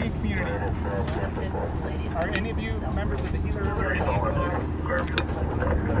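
Pickup truck engine idling with a steady low hum, with people talking quietly over it.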